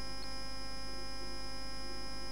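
Steady electrical mains hum with a faint, constant high-pitched whine, unchanging throughout.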